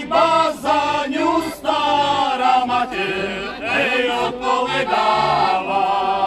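A group of men singing a Slovak folk song together, several voices in harmony, to a heligonka (diatonic button accordion) whose bass notes keep a steady beat underneath.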